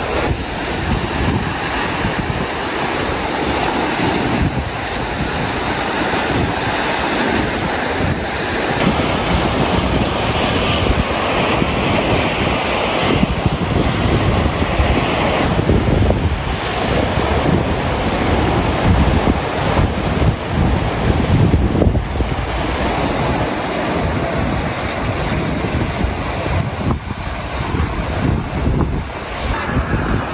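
Sea waves breaking and washing over a rocky shore, with wind buffeting the microphone in rumbling gusts.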